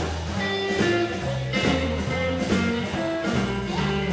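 Live electric blues band playing an instrumental intro: electric guitar over bass and drums, with no singing yet.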